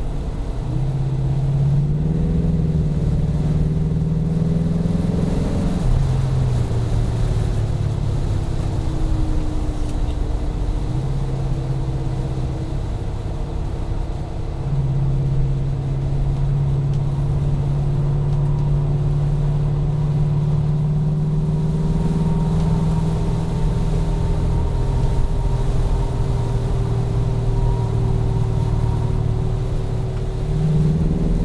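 Chrysler 440 cubic-inch (7.2 L) V8 of a modified 1974 Jensen Interceptor Mk3, heard from inside the cabin, running steadily under way. Its deep note steps up and down several times as the load changes.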